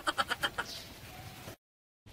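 The tail of a quavering, bleat-like cry, pulsing about ten times a second and fading out within the first half second, followed by low background noise that cuts off to complete silence about a second and a half in.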